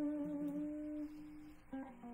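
Guitar holding one long, steady note that dies away just after a second in, followed shortly before the end by a few new plucked notes.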